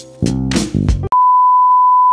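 Background music with a drum beat, cut off about halfway by a steady, loud, high test-tone beep: the tone that goes with TV colour bars.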